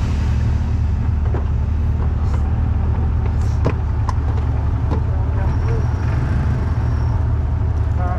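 Side-by-side UTV engine idling with a steady low rumble, picked up close by the vehicle it sits on, with a few light clicks over it.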